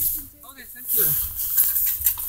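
A girl's voice, brief and low, with handling noise and hiss from a phone camera moving against a puffy jacket.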